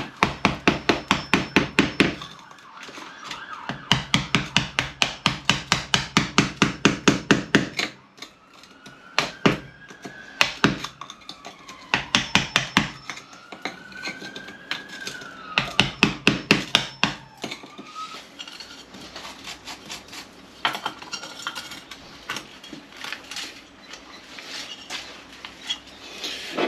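Hammer rapidly striking a chisel, about four or five blows a second in several runs with pauses, chipping out the wall at the top of a switch back-box recess that is not yet deep enough for the box to sit flush. A siren rises and falls faintly in the background through the middle.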